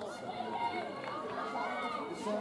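Several rugby players' voices shouting and calling over one another at a ruck, with no commentary over them.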